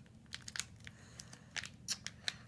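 Faint, scattered crinkles and ticks of a thin plastic play-dough wrapper being handled.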